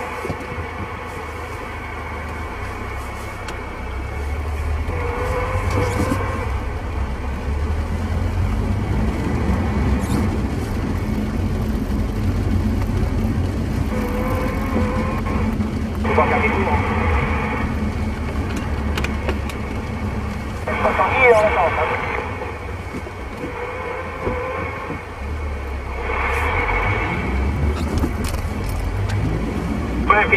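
CB radio receiver audio: faint, garbled, narrow-band voices and hiss that come and go in short patches, over the steady low rumble of a vehicle's engine and road noise.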